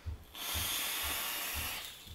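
Steady hiss of air during a hit on the Digiflavor Pilgrim GTA/RDTA rebuildable atomizer, lasting about a second and a half.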